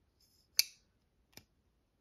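Tactile Knife Co Rockwall thumbstud liner-lock folding knife flicked open by its thumb stud: a sharp click about half a second in as the blade snaps out and locks, then a quieter click about a second later as it is folded shut against the detent.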